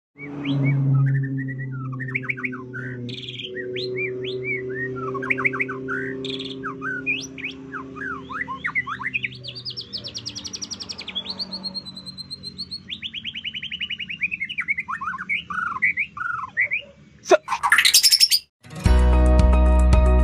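White-rumped shama singing a long, varied song of whistled sweeping notes and rapid trills, over a low steady hum in the first half. Near the end comes a fast rising whoosh, then music starts.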